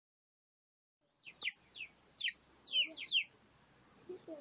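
Young chicks peeping: about six quick, high, downward-sliding peeps in a cluster, starting about a second in and lasting about two seconds.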